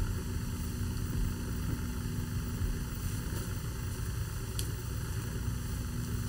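Steady hiss with a low hum underneath, like radio static, and a faint click about four and a half seconds in.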